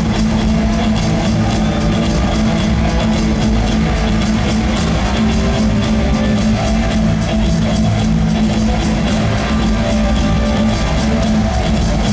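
Punk rock band playing live: drum kit, electric guitars and bass, loud and unbroken, with a steady drum beat.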